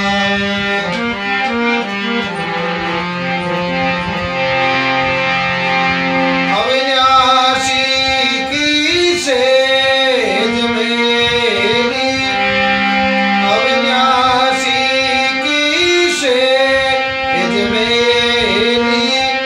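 A harmonium plays a Rajasthani bhajan melody in sustained reed notes. A man's singing voice rises over it from about six or seven seconds in, with the harmonium continuing underneath.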